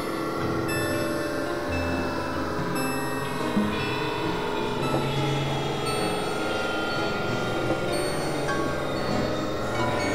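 Dense, layered experimental electronic music: many held tones and drones sound at once over a low hum, with slow pitch glides sweeping down and later back up.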